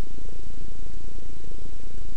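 Low, steady rumble with a faint hiss over it and no clear notes: a lull in the album's music track.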